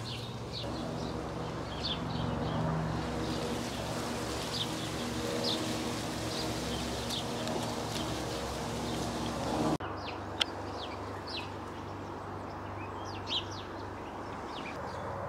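Small garden birds chirping in short, scattered calls, over a steady low mechanical hum that drops away abruptly about ten seconds in.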